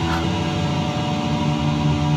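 Amplified electric guitar with notes held and ringing steadily, in a lull of the rock playing.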